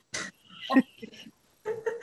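Short, broken snatches of people's voices on a video call, with a brief snort-like laugh among them; speech picks up again near the end.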